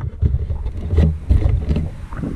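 Mountain bike rolling down a rocky dirt trail, heard as a steady low rumble of wind buffeting the microphone, broken by several sharp knocks and rattles as the bike jolts over stones.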